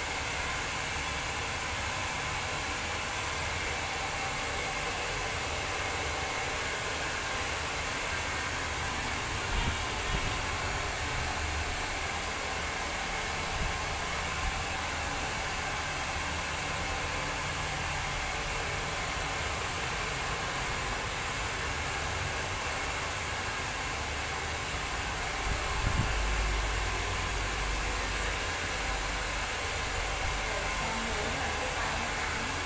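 Handheld hair dryer blowing steadily while a customer's hair is dried, a constant airy hiss. A few brief low thumps come about ten seconds in, and a short low rumble comes near the end.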